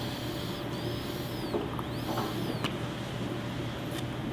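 A long draw on a mechanical vape mod with a Kayfun 3.1 rebuildable atomizer, followed by an exhale of vapor. It is heard only as a faint, steady hiss over room noise, with a couple of faint crackles in the middle.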